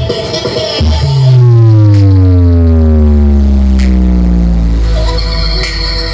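Electronic dance music played loud through a large karnaval ('horeg') sound-system stack of subwoofers and mid/high cabinets. About a second in, a very deep bass note starts and slides slowly downward for several seconds, the loudest part. Steady held synth tones come in near the end.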